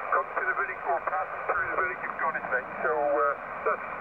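A distant amateur radio operator's voice received over HF on a Yaesu FT-817 transceiver and heard from its speaker: narrow, thin-sounding speech over a steady hiss.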